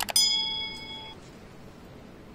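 A mouse-click sound effect, then a notification-bell ding that rings for about a second and fades away.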